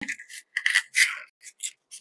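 Craft paper rustling and rubbing between the fingers in a few irregular bursts as it is rolled into a tube, loudest around the middle.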